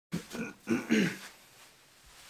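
A man's voice making three short vocal sounds without clear words in the first second or so, then low room tone.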